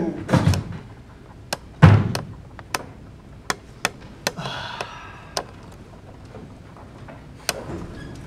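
Heavy thud of a person dropping onto a wooden stage floor about two seconds in, after a couple of duller footfalls. Scattered sharp clicks follow.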